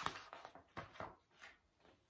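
Faint rustling of a picture book's page being turned and the book being handled, a few soft papery sounds that fade out.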